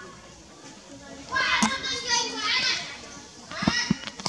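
Macaques screaming: shrill, wavering squeals in two bouts, a longer one from about a second in and a short one near the end.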